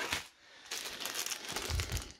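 Small plastic zip-lock bags of LEGO pieces crinkling as they are rummaged through and picked up, with a soft low thump near the end.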